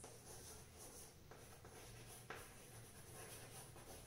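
Chalk writing on a blackboard: faint scratching and light taps of the chalk, with one sharper tap a little past halfway.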